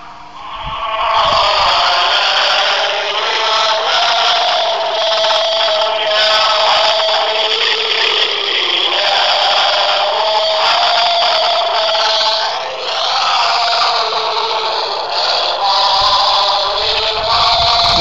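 A young boy chanting Islamic dhikr (zikir) in a loud, high, sustained sing-song voice, with only brief breaks.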